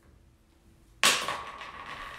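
A sharp knock about a second in, followed by rustling and scraping as a jar of chalk paint is picked up and handled.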